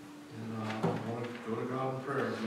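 A man singing softly with an acoustic guitar. His voice comes in about a third of a second in after a brief lull, on held, stepping pitches.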